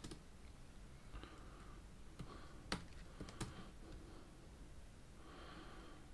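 Faint computer keyboard keystrokes: a few sparse, separate clicks as commands are typed at the keyboard.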